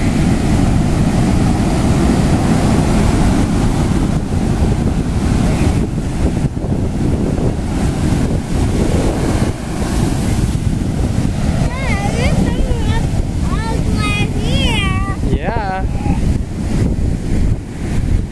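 Ocean surf breaking and washing up the beach, a steady loud rush with wind buffeting the microphone. Past the middle a high-pitched voice calls out several times over the surf.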